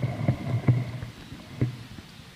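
A low hum with a few sharp knocks, fading out about a second and a half in.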